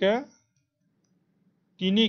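A man speaking Assamese: his voice trails off just after the start, then a pause of about a second and a half with almost nothing to hear, and he begins speaking again near the end.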